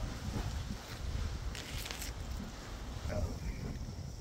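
Wind buffeting the phone's microphone as a low, uneven rumble, with brief rustling about a second and a half in.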